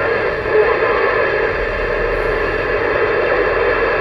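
Uniden Grant LT CB radio on receive, its speaker putting out a steady rush of static with faint steady whistles underneath.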